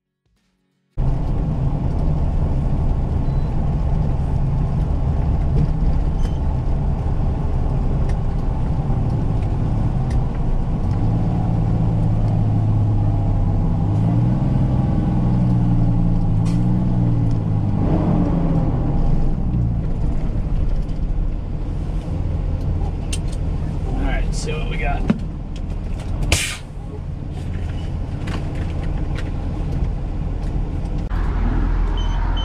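Peterbilt 389 heavy tow truck's diesel engine running at highway speed, heard from inside the cab as a steady low rumble. The engine pitch rises and falls for a few seconds in the middle, and near the end come a couple of sharp clicks.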